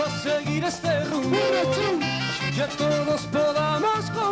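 Live merengue band playing an instrumental passage: horn lines over bass, keyboard and percussion, with a steady dance beat.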